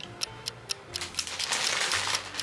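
Crinkling and rustling of the stiff paper wrapping on a large rose bouquet as it is picked up: a few sharp crackles, then a denser rustle near the end.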